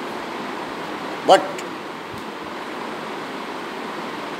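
Steady background hiss of room noise, with one short spoken word about a second in.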